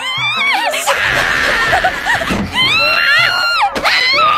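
A young female anime character's voice screaming over background music: a short, high wavering cry at the start and a long, high held scream in the second half.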